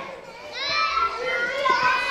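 A child's high-pitched voice answering a question from the audience, starting about half a second in after a short pause.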